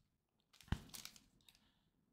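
A single sharp tap about two-thirds of a second in, then a few faint crinkles, as a sealed foil trading-card pack is picked up off the table; otherwise near silence.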